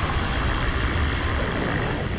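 A roaring blast of fire, a dense rushing noise that starts sharply, holds and then dies away near the end.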